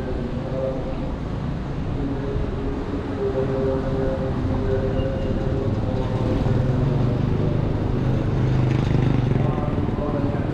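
Street traffic: a motor vehicle's engine running close by, with a steady hum that grows louder in the second half.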